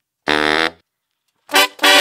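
Short funk brass stabs from a chopped sample, separated by dead silence: one held stab about a quarter second in, then two quick stabs near the end.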